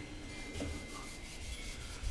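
Cloth rubbing paste wax into the finish of a wooden table leg by hand: a soft, even rubbing.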